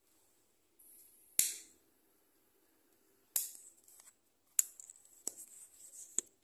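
A handheld lighter struck four times, about a second apart: each strike a sharp click, the first two trailed by a brief hiss.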